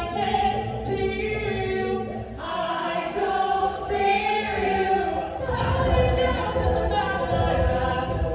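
An a cappella group singing in layered harmony with held chords and no instruments, the voices carrying the rhythm; a low vocal beat grows stronger in the second half.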